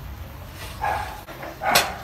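A dog barking twice, a short bark just under a second in and a louder one near the end.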